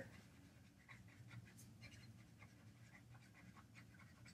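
Near silence, with faint short scratches of a felt-tip marker writing on paper.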